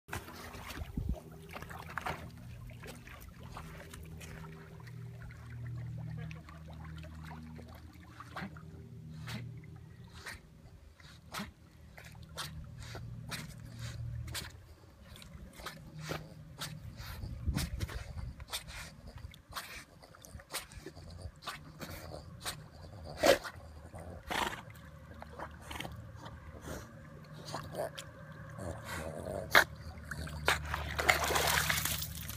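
A large and a small dog swimming in a lake, paddling and splashing, with short sharp splashes throughout. The loudest splash comes a little over twenty seconds in.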